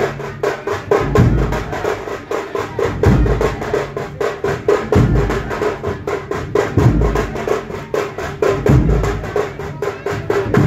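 Dhol and tasha drumming: fast, even stick strokes on the drums, with a deep bass drum beat about every two seconds.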